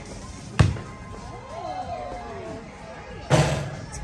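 A basketball bounces once with a sharp smack on a concrete patio about half a second in. Faint background music with gliding tones follows, and a short, louder burst of noise comes near the end as the ball goes up at the hoop.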